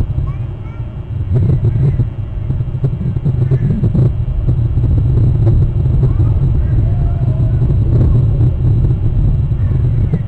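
Steady low wind rumble on an outdoor nest-cam microphone, with faint, short, high chirps of birds now and then.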